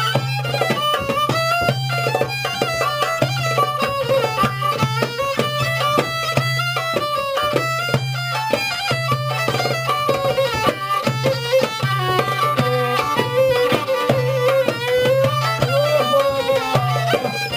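Fiddle playing a quick-moving Greek folk melody, with hand-drum beats and a steady low drone note held underneath.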